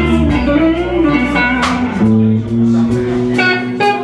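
A live blues band of electric guitar, electric bass and drum kit playing a slow blues, with the electric guitar playing lead lines that bend in pitch.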